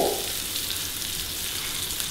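Beef burger patties frying in butter in a pan: a steady sizzle.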